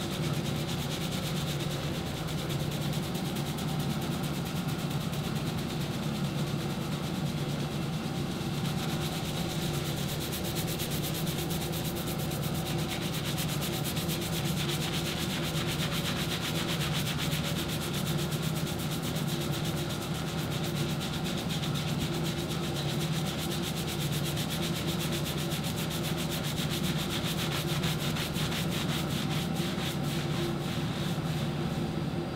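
Fingertips scrubbing a thick shampoo lather into a client's hair and scalp: a continuous, rapid, wet rubbing that grows stronger about a third of the way in, over a low steady hum.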